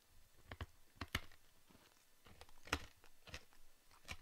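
A handful of faint, separate clicks and small ticks, scattered unevenly, with the sharpest one a little under three seconds in.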